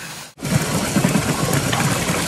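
Spring water pouring down a mossy rock wall and splashing close by, a dense, steady rush with rough low rumbles. It starts suddenly about a third of a second in.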